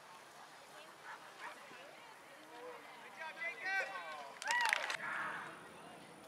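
A dog barks briefly, loud and sharp, about four and a half seconds in, over faint background voices.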